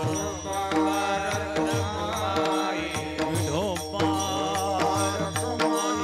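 A male voice singing a long, sliding devotional melody into a microphone, over steady held accompaniment notes and a regular drum beat.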